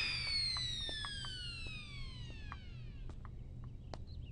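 Comic sound effect: a long whistle-like tone sliding steadily downward in pitch over about three seconds and fading away, with a few faint ticks.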